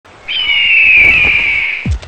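A bird of prey's scream: one long screech that falls slightly in pitch, followed near the end by a short, low, falling whoosh.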